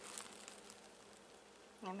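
Near silence: faint room tone with a low steady hum, and a voice starting at the very end.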